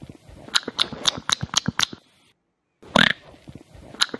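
Smacking, open-mouthed chewing of a burger: a rapid run of wet mouth clicks, about four a second, then a short pause, a louder, longer mouth noise and more smacking clicks.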